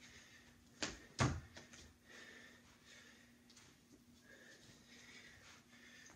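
Two soft thumps about a second in, as a person pushes up off a carpeted floor and steps into a resistance band loop, followed by faint rustling and breathing.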